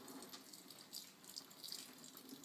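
A thin stream of water poured from a plastic bucket, trickling and splashing faintly into the drum of a composting toilet onto its peat moss starter mix.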